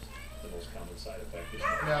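A domestic cat lets out a protesting meow near the end as its tail is pulled.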